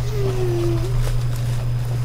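A steady low background hum throughout, with a single short falling vocal hum, like a murmured "mm", in the first second.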